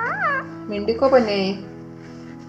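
Rose-ringed parakeet calling: a short rising-and-falling call at the start, then a longer call about a second in, over background music.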